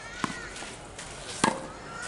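Tennis ball struck with a racket during a rally: two sharp hits about 1.2 seconds apart, the second louder.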